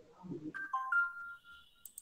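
Electronic notification chime: a few clean beeping tones stepping down in pitch, then a higher tone held for about a second, with a sharp click near the end.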